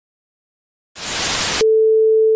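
A burst of electronic static hiss starts about a second in, then switches abruptly to a steady, loud, mid-pitched beep tone.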